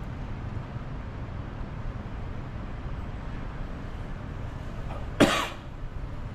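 A person coughing once, loud and short, about five seconds in, over a steady low rumble of street traffic.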